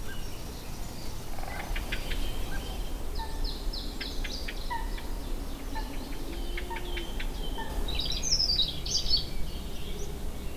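Woodland songbirds singing: scattered chirps and trills, a run of quick descending notes about three seconds in, and a busier song phrase near the end, over a steady low rumble.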